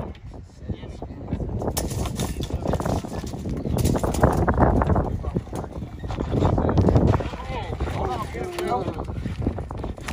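Several people talking indistinctly over each other, with a low rumble of wind on the microphone and scattered knocks; a voice is clearest near the end.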